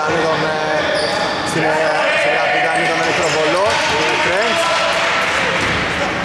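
Basketball bouncing on a hardwood court during live play, with voices calling out over it.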